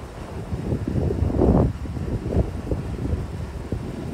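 Wind buffeting an outdoor microphone: an uneven low rumble that swells into a stronger gust about a second and a half in.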